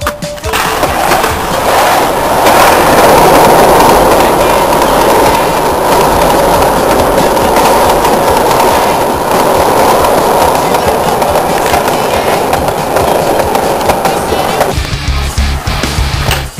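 Skateboard wheels rolling steadily over rough concrete, a loud, continuous rolling noise that cuts off suddenly about a second before the end.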